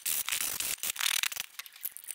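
Foam sanding sponge rubbed along the edge of a routed MDF letter in several quick back-and-forth strokes with a dry rasp. The rasping stops about one and a half seconds in, leaving a few light clicks of the wood being handled.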